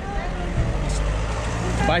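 A road vehicle passing close by on the street, its engine making a steady low rumble.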